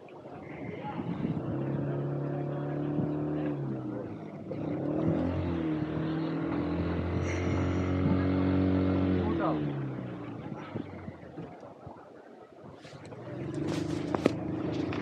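A motor engine running and passing by, its pitch holding steady and then jumping up or down in steps. It swells about a second in, fades after about ten seconds, and a similar engine sound rises again near the end.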